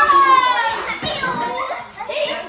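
A group of young children talking and calling out over one another. One high-pitched child's voice is loudest at the start and slides down in pitch.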